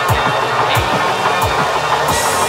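Hard drum and bass playing in a DJ mix: a fast electronic beat with deep kick drums that drop in pitch, sharp cymbal hits, and a dense wall of synth sound in between.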